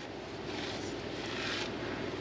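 Low, steady background noise with no distinct knocks or clicks: room tone, a little louder in the middle.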